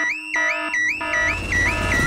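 Cartoon house alarm wailing, a rising-and-falling whoop repeating about three times a second. Partway through, a low rumble comes in under it.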